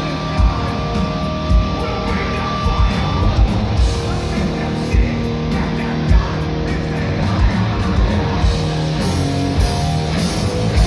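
Heavy metal band playing live, heard from the crowd: distorted electric guitar, bass and drums, with a held guitar note over the first three seconds and heavy drum hits throughout.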